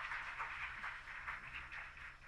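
Audience applause: scattered clapping that thins out and fades away.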